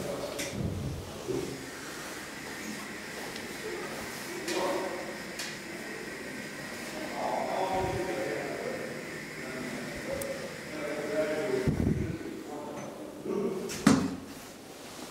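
DEVE hydraulic elevator running between floors, with a faint steady whine. A low thump comes near the end, then a sharp click.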